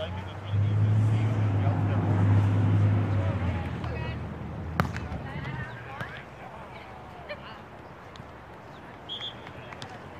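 A low engine drone, as of a passing vehicle, swells over the first second and fades out by about four seconds in, with distant voices under it. Near the middle comes a single sharp smack, a volleyball being struck, followed by a few fainter clicks.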